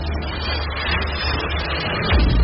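Logo-intro sound effect: a rumbling whoosh with a deep low drone that swells gradually.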